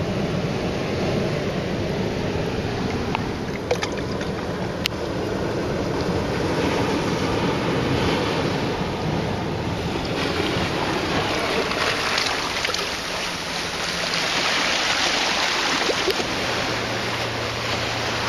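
Seawater washing over rocks and pebbles in the shallows, a steady rush that grows louder twice as the water surges.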